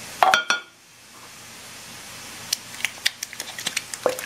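A metal soup can being scraped out and tapped to empty the last of the cream of mushroom soup into a casserole dish: two loud knocks near the start, then a run of quick light clicks and taps over the last second and a half.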